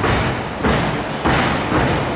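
Repeated heavy thuds on a wrestling ring's canvas, about four in two seconds.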